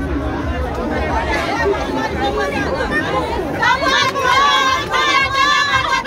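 Outdoor crowd chatter: many people talking and calling out at once. A bit past halfway through, a louder, high voice rises above the crowd in long held calls.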